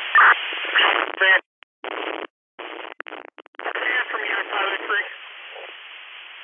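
Fire department radio traffic: short, unintelligible voice transmissions broken by abrupt dropouts, then an open channel of steady hiss from about five seconds in.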